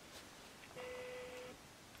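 A single faint, steady beep-like tone lasting under a second, about halfway through, over quiet room tone.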